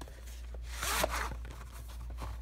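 A VHS cassette sliding out of its cardboard sleeve: one short scraping rustle of plastic against card, about halfway through, over a steady low hum.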